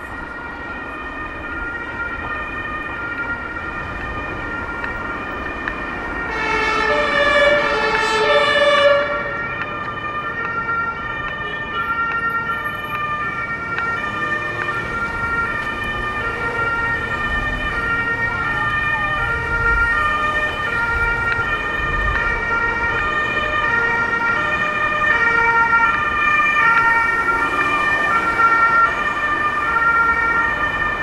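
Two-tone emergency vehicle siren (German Martinshorn) sounding continuously, alternating between two pitches about every half second. It is loud and swells louder with a fuller tone from about six to nine seconds in.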